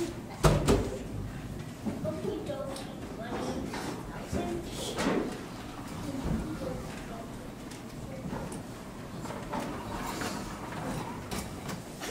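Stage scene change: a sharp thump about half a second in, then scattered knocks and footsteps as furniture is set in place, over low murmuring voices.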